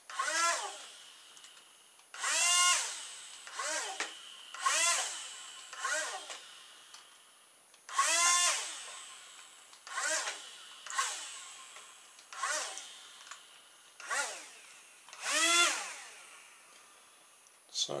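Two little electric motors with small plastic propellers on a homemade RC airboat, switched on in short bursts about a dozen times, each burst a whirring whine that falls in pitch as the motor winds down. The motors are being run in turn to steer the boat left and right.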